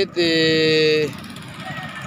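A man's voice holding one long, steady vowel for about a second, then quieter background vehicle noise from the dirt track.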